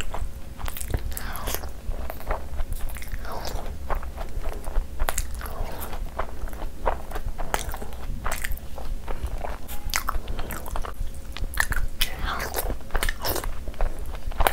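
A person chewing soft, curry-soaked butter chicken and bread with their mouth full, making a steady, irregular run of short wet clicks and smacks.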